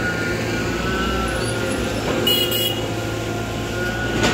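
Steady low engine rumble of motor traffic, with a short high-pitched double beep a little over two seconds in.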